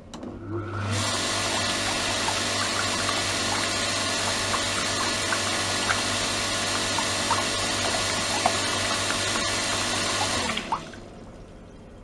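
Electric pump of a degassing and microbubble-generating circulation system starting up and running, with a steady motor hum under the gush and splash of water pouring from the hose into a plastic tub. It cuts off abruptly about ten and a half seconds in, with a short knock just after.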